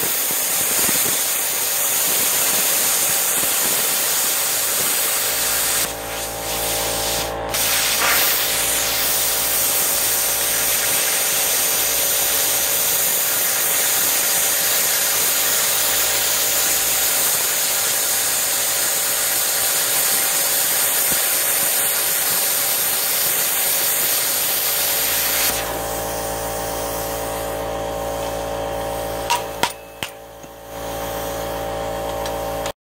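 Hypertherm Powermax45 plasma cutter cutting circular holes in steel plate: a loud, steady hiss of the arc and air, broken briefly about six seconds in. The cut stops about 25 seconds in, leaving a quieter steady hum, and a couple of metal clanks come near the end.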